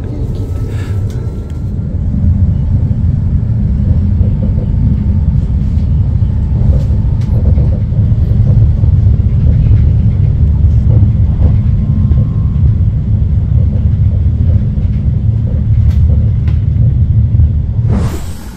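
Steady low rumble of a moving passenger train heard from inside the carriage, growing a little louder about two seconds in.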